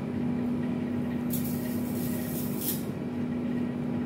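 A steady machine hum, with two short hissing scrapes, one about a second and a half in and one about two and a half seconds in, while noodles are served with metal tongs.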